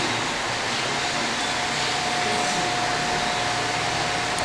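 Steady room noise, an even hiss, with a faint steady high tone joining about a second and a half in.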